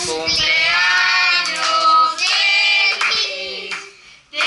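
A child and women singing a birthday song together, with hand clapping; the voices drop off near the end before the next line.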